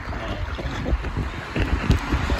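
Inflatable raft sliding down an enclosed water-slide tube: a rushing rumble of water and air, with irregular low thumps as the raft bumps along the fibreglass, growing louder and hardest just before the end.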